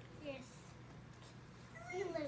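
Faint high-pitched vocal sounds that glide in pitch: a short one near the start and a longer one near the end that rises and then falls.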